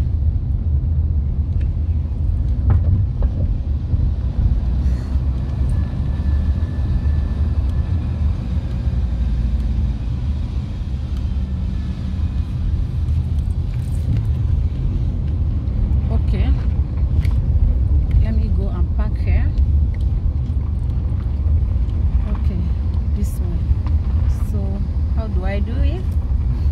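Steady low rumble of a car's engine and road noise heard inside the cabin while driving.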